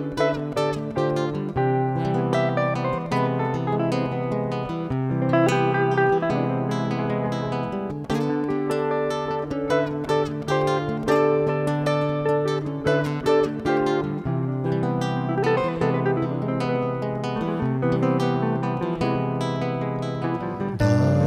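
Instrumental guitar duo: an archtop hollow-body electric guitar plays a line of quick picked notes over an acoustic guitar's chordal accompaniment.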